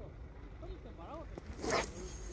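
A fishing rod cast overhead: a short, loud swish of the rod and line about three-quarters of the way through, then a steady high hiss as line runs off the reel.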